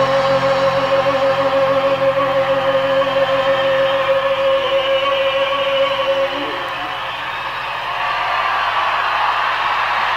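A live band holding a sustained chord, which cuts off about six and a half seconds in and leaves the noise of a large outdoor concert crowd.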